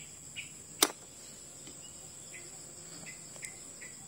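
Steady high-pitched chirring of crickets, with a single sharp click about a second in.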